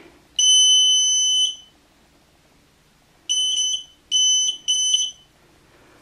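Snap Circuits burglar-alarm circuit's buzzer sounding a steady, high-pitched electronic tone. It gives one long beep of about a second, then three short beeps in quick succession.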